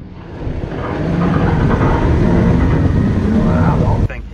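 A car engine running hard at high revs, swelling over the first second and then holding loud and steady.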